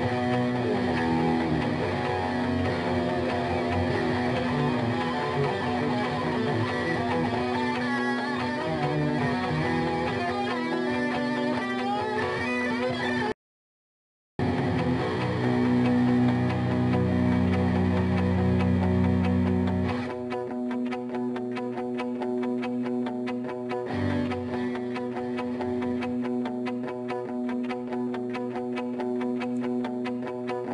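Solo electric guitar played live on stage, a steady held low tone under shifting notes. The sound cuts out completely for about a second near the middle. It then comes back with deep sustained bass notes, and in the last third thins to sparser, rhythmic picked notes.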